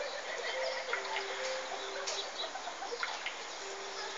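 Steady rain on a wet street, an even hiss with scattered drip ticks. A few faint, short, steady calls come and go underneath.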